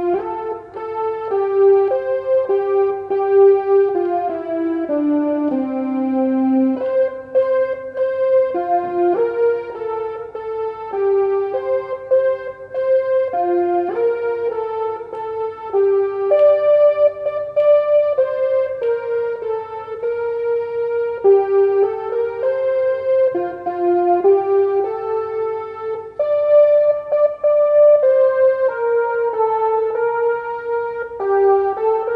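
Yamaha arranger keyboard playing a slow hymn melody note by note on a portamento voice, the notes sliding into one another.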